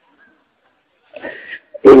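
A pause in a man's speech: near silence for about a second, a short faint sound, then his voice comes back loudly just before the end.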